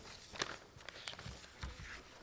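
Sheets of paper being handled and shuffled at a lectern close to its microphone: a few soft rustles and small taps, the sharpest about half a second in.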